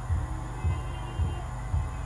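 A steady low hum with a soft, low thump repeating about twice a second, a muffled bass beat under a pause in amplified speech.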